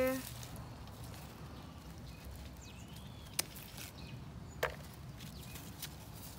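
Two sharp snips about a second apart, from small scissors cutting green beans off a bush bean plant, over a faint steady outdoor background.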